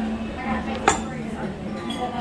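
A single sharp clink of tableware about a second in, ringing briefly, over a low murmur of diners' voices.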